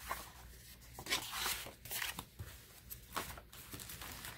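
Paper rustling and sliding as stiff card-stock score pads and tally cards are handled and shuffled together, in a few irregular brushes and flicks.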